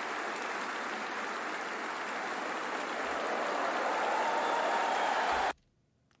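Audience applauding steadily, growing a little louder, then cutting off suddenly near the end.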